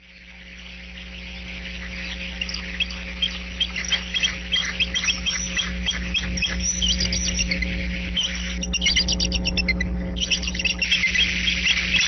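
Bald eagles giving many short, high chirps and twittering calls, with a fast chattering run about nine seconds in, over a steady low hum. The sound fades in over the first two seconds.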